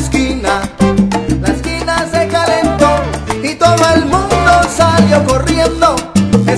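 Salsa orchestra playing an instrumental passage with no vocals: a moving bass line under melody instruments and steady percussion strikes.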